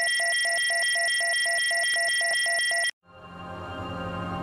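Electronic beeping: steady high tones with a rapid beep pulsing about five times a second, which cuts off suddenly about three seconds in. Soft music then fades in near the end.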